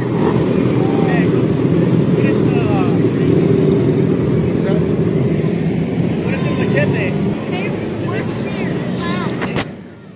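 Engines of a column of small motorcycles running at parade pace as they ride past, a steady drone that drops away sharply near the end.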